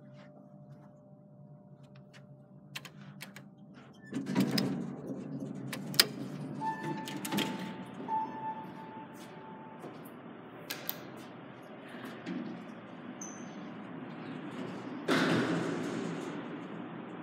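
Montgomery hydraulic elevator's sliding doors working: a steady rushing noise starts about four seconds in, with scattered clicks and knocks. A steady tone sounds for about three seconds midway, and a loud thud comes near the end.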